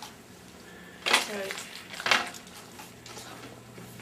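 Mostly speech: a voice says "alright", with another short vocal sound about a second later, over a steady low electrical hum.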